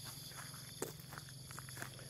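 Faint jungle insect chorus, crickets singing in several steady high-pitched tones, with a few soft footsteps.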